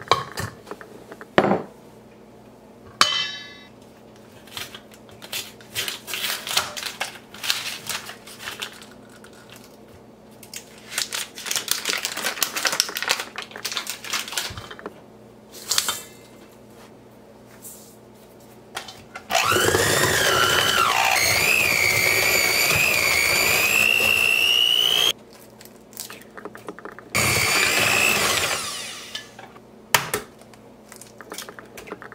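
Clinks and scrapes of a measuring cup and utensils against a stainless-steel mixing bowl. Then an electric hand mixer runs for about six seconds, its whine rising as it gets up to speed and then holding. It stops and runs again for a couple of seconds near the end, beating cookie dough.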